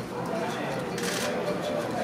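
Press photographers' camera shutters clicking in rapid bursts, thickest about a second in, over background voices.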